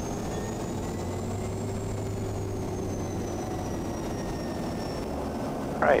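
Quest Kodiak 100's Pratt & Whitney PT6A turboprop engine running at low taxi power, a steady drone with a faint high turbine whine that rises a little and eases back.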